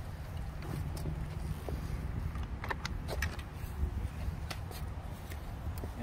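Light clicks and rattles of a removed wheelchair footrest's plastic footplate and metal hanger being handled, over a steady low outdoor rumble.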